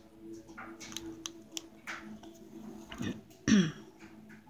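A person coughing or clearing the throat once, short and falling in pitch, about three seconds in; this is the loudest sound. Before it, small clicks and rustles of the needle, thread and beads being handled, over a faint steady hum.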